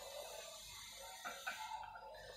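A few faint, soft ticks in an otherwise quiet room, mostly in the second half: fingers pressing the small push buttons on the face of a Testo mini waterproof probe thermometer.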